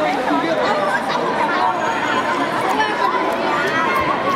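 Crowd chatter: many people talking at once in a large hall, a steady mix of overlapping voices with no single clear speaker.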